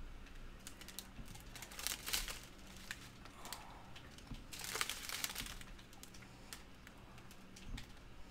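Small plastic bags of diamond painting drills crinkling and rustling as they are handled, with scattered light clicks and a longer burst of crinkling about five seconds in.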